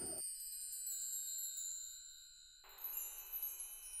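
Soft, high twinkling chimes with sparkling tones that slide downward and fade out about two and a half seconds in, then a second shimmer of chimes begins.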